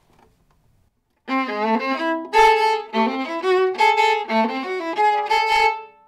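A viola, bowed, playing a solo melodic passage of held and moving notes, starting about a second in.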